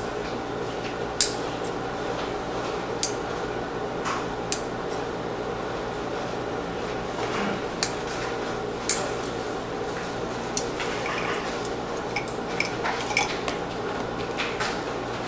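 Fingernails being cut with a nail clipper: a sharp snip every second or two, five loud ones in the first nine seconds, then softer, quicker little clicks near the end. A steady hum runs underneath.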